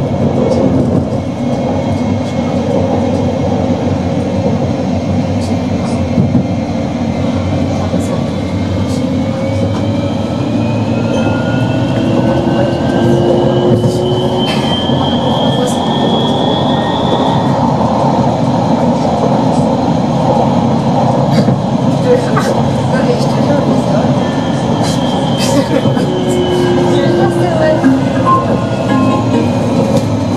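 Tram running on its rails, heard from inside the driver's cab: a steady rumble of wheels on track with the electric traction motors whining, the whine rising in pitch through the first half and falling again later, and scattered sharp clicks throughout.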